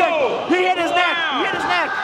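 Excited men's voices calling out in drawn-out exclamations, with no clear impact.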